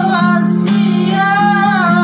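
Acoustic guitar strummed as accompaniment to a duet, a woman and a man singing together in long, held notes that bend in pitch.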